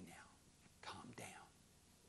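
A man's quiet, hushed speech: the word "now" right at the start, then another short whispered bit about a second in.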